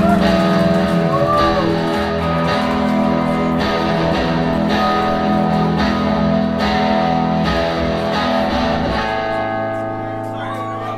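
Live rock band playing without vocals, led by electric guitar: held, ringing guitar chords over a steady pulse.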